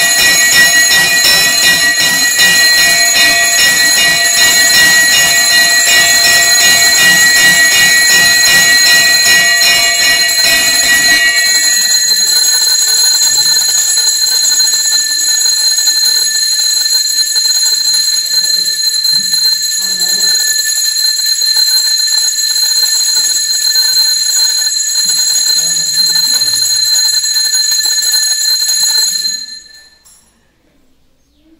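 Temple bells ringing loudly and continuously during an aarti, a fast, even clanging for about the first eleven seconds, then a steadier ringing that stops abruptly near the end.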